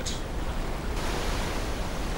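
Churning white water at the foot of a waterfall, rushing steadily; the hiss turns brighter about halfway through.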